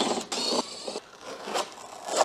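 Tape ripping and a fiberboard insulating sheet scraping as it is peeled off the top of a LiFePO4 battery's cell pack. It is loudest in the first half second, then fades to fainter scratches.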